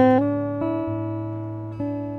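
Steel-string acoustic guitar played fingerstyle. A chord plucked at the start rings out and slowly fades, and single notes are added about half a second in and again near the end.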